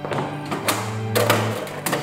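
Dramatic background score: sustained low notes that shift about halfway through, punctuated by several sharp percussive hits.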